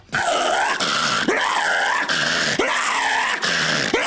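Deathcore snarl vocals: a run of harsh, raspy snarled syllables, about two a second, that sound like a ravenous pit bull chewing on meat.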